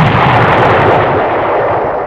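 Explosion sound effect: a loud, noisy rumble that holds steady, then begins to fade near the end.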